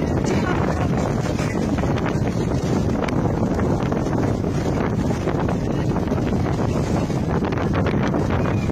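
Steady wind noise buffeting the microphone, a dense rushing rumble.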